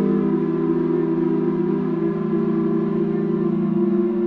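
Ambient electronic music: layered, sustained droning tones that shift pitch about halfway through and again near the end.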